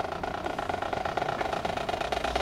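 Marching band percussion playing a rapid drum roll that grows steadily louder, leading into the band's entrance.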